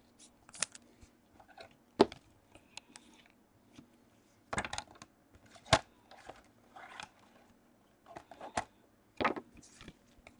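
Gloved hands handling a trading card and putting it into a rigid plastic holder: scattered sharp plastic clicks and taps, the sharpest about two seconds in, with brief rustling between.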